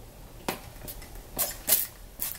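Trigger spray bottle spritzing water onto a mascara spoolie: two quick hissing sprays in the second half, after a light click about half a second in.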